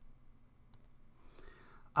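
Near silence between recited lines: room tone with one faint click a little under a second in, and a soft hiss just before the voice resumes.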